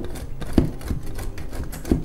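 Block of hard white cheddar grated on a stainless steel box grater: quick, irregular rasping strokes, with a few sharper knocks, the loudest about half a second in and near the end.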